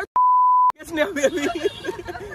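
A single steady 1 kHz censor bleep lasting about half a second, edited in over a word with the rest of the audio dropped out around it; a man's talking resumes right after.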